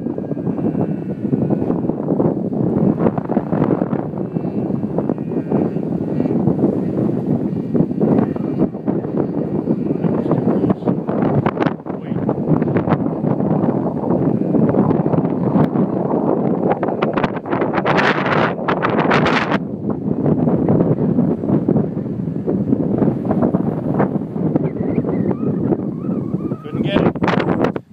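Strong wind buffeting the microphone: a rough, ever-fluctuating rumble, with a brighter, louder rush about two-thirds of the way through.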